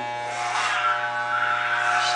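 Electric hair clippers running with a steady buzz while cutting hair for a buzz cut.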